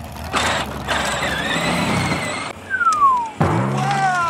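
Edited-in cartoon sound effects: a rushing whoosh for about two seconds, then a single whistle sliding down in pitch, over light music.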